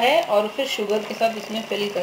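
Speech only: people talking, with no other sound standing out.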